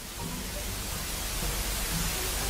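Edited-in static noise: a steady hiss with a low rumble beneath it, slowly growing louder.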